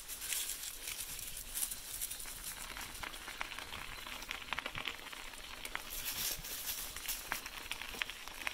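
Bicycle tyres rolling over a gravel path strewn with dry fallen leaves: a steady hiss with many small clicks and crunches.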